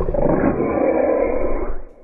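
A loud, rough roar lasting nearly two seconds, cutting off shortly before the end.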